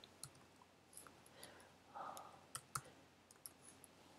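Faint, irregular keystroke clicks from a computer keyboard as a line of code is typed.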